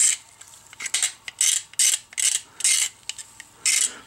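A razor knife blade scraping a 3D-printed PLA part in a run of short, repeated strokes, shaving off leftover support material.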